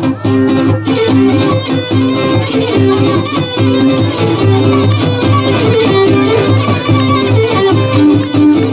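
Cretan lyra and laouto playing an instrumental passage of a traditional Cretan tune, the bowed lyra carrying the melody over the plucked lutes with a steady repeating figure.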